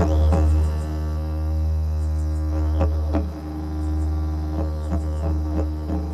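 Didgeridoo playing a steady low drone, with quick sweeps up and down in its upper tones every second or two.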